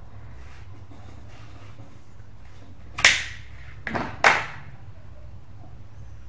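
Kitchen knife cutting through an apple on a cutting board: two sharp cracks a little over a second apart, the second with a smaller click just before it.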